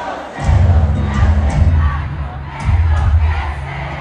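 Large arena crowd shouting and singing along over the band's amplified music, heavy bass coming in about half a second in and pulsing in blocks beneath the voices.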